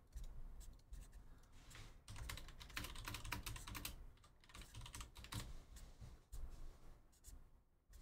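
Faint typing on a computer keyboard: a run of irregular key clicks with short pauses between them.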